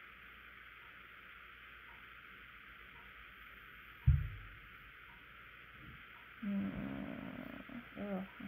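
A single dull thump about halfway through, then a low, drawn-out cat meow lasting about a second near the end, over a steady background hiss.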